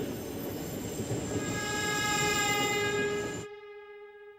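Commuter train running with a steady rumble, and a train horn sounding one long held note from about a second and a half in. The running noise cuts off suddenly near the end while the horn note carries on.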